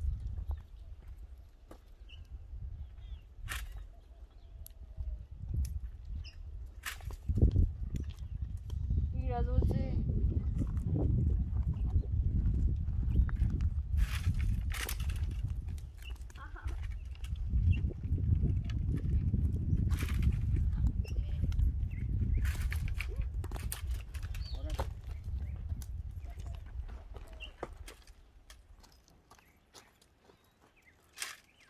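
A long cane pole clicking and knocking against the branches of a guamúchil tree as pods are cut down. A low rumble runs under most of it, with a brief wavering call about nine seconds in.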